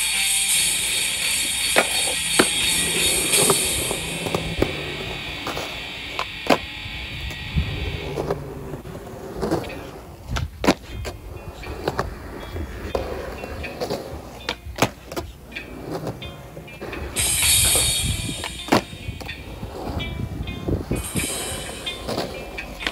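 Background guitar music for the first several seconds, then a skateboard rolling on concrete: a low wheel rumble broken by irregular clacks and knocks of the board and wheels.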